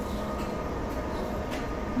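Steady low hum and hiss of a YHT high-speed electric train, a Siemens Velaro TR, standing still and not yet moving off.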